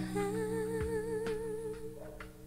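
Slow ballad: a woman's voice holds one long note with vibrato over sustained low chords.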